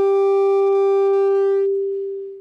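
Microphone feedback through the PA: a loud, steady howl on one pitch with overtones, cutting across the talk. Its upper overtones drop out and it starts to fade near the end.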